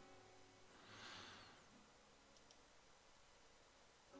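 Near silence: room tone, with a couple of faint computer mouse clicks about two and a half seconds in.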